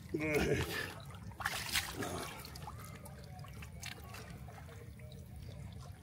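Shallow lake water lapping and trickling among shoreline rocks, with a short vocal exclamation near the start and a few small clicks and splashes about two seconds in.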